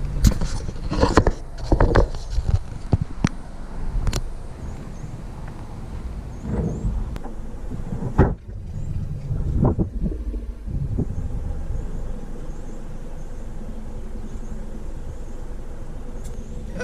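A parked car's engine idling steadily, with a few sharp knocks and handling bumps in the first seconds and a car door shutting about eight seconds in. Faint short high chirps come through above the idle.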